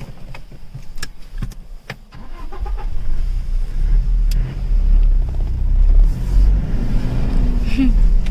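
Low rumble of a car heard from inside its cabin, growing steadily louder from about two seconds in, with a few light clicks in the first two seconds.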